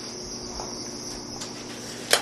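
Steady high-pitched whine over a faint low hum, with no distinct event; the whine fades about one and a half seconds in.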